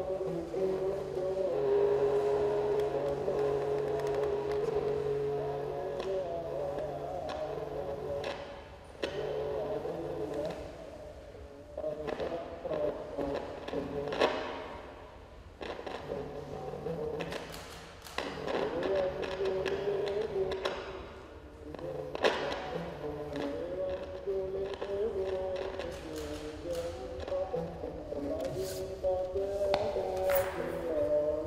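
Experimental sound performance: sustained droning tones that waver in pitch over a steady low hum, breaking off and returning several times, with scattered sharp clicks and knocks.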